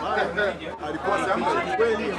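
Speech only: a man talking in Swahili.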